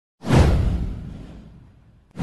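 Whoosh sound effect of a logo intro: a sudden swoosh with a deep boom beneath it, sweeping down in pitch and fading away over about a second and a half.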